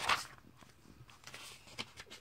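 A comic book page being turned by hand, the paper rustling loudest at the start. A softer rustle follows, then a short tick near the end as the page settles.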